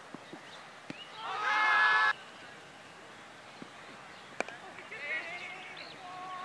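A loud, held shout lasting about a second, starting about a second in and cut off sharply. About four seconds in comes a single sharp crack of a cricket bat striking the ball, followed by fainter calls from the players.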